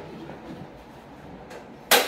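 A plastic tub handled on a kitchen counter, with one sharp knock shortly before the end.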